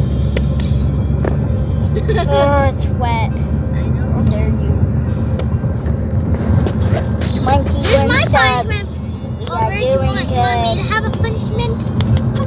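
Steady low rumble of road and engine noise inside a moving car's cabin. A child's high-pitched voice comes over it in short gliding bursts without clear words: about two seconds in, then around seven to eleven seconds.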